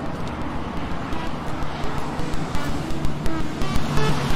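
Eurorack modular synthesizer music: a hiss-like noise wash with a steady clicking pulse and short blips of sequenced notes at several pitches, slowly growing louder.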